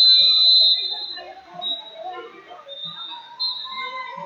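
Referee's whistle blown in a long, loud blast that stops about a second in, stopping the action on the mat, followed by shorter, fainter whistle blasts.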